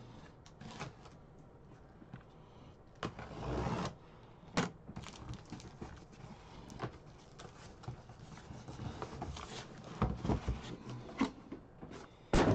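Cardboard trading-card boxes and their packaging handled on a table: scattered rustles, clicks and light knocks, with a longer rustle about three seconds in and a cluster of sharper knocks near the end.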